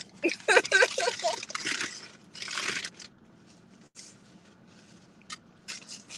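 Brief voice sounds, then a short crunchy rustle and a few light clicks near the end, the sound of eating and handling takeout food.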